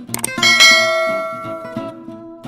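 A notification-bell sound effect over strummed acoustic guitar music: two quick clicks, then about half a second in a bright bell ding that rings on and slowly fades.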